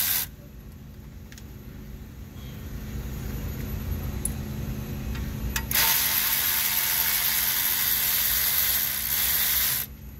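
Cordless electric ratchet running in two loud, steady bursts with abrupt starts and stops: one cuts off just after the start, the other runs for about four seconds from about six seconds in. A few faint clicks of tool handling come in the quieter stretch between them.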